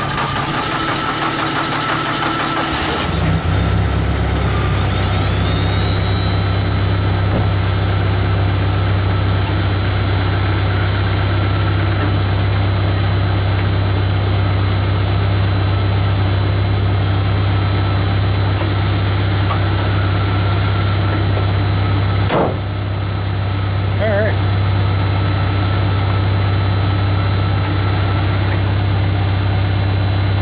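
Volkswagen engine cranking on its starter after its dead battery has been charged, catching about three seconds in and then idling steadily, with a high steady whine over the idle. The idle breaks off briefly about 22 seconds in and picks up again.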